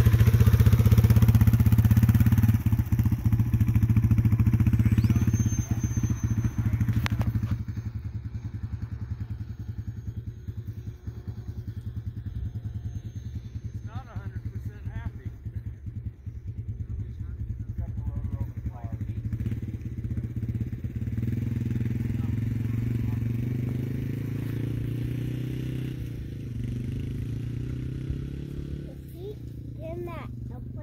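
Dirt bike engine idling steadily, louder for the first seven seconds or so and then lower.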